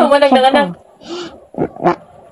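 A woman crying aloud in a long wordless wail, then a breathy sob-inhale and a short rising cry.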